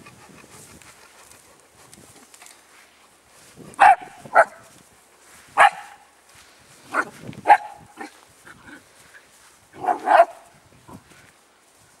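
Dog barking: about seven short, sharp barks in loose pairs, starting about four seconds in.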